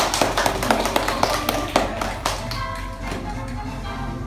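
Children clapping quickly for about two seconds, then a kazoo playing a buzzing tune.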